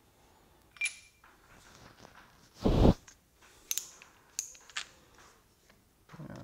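Hand work on a motorcycle handlebar: light metallic clicks and clinks as an aluminium handguard bracket is fitted around the bar, one with a short ring about a second in. A single dull thump, the loudest sound, comes just before the middle, followed by a few more sharp tool-handling clicks as a screwdriver is brought to the clamp screw.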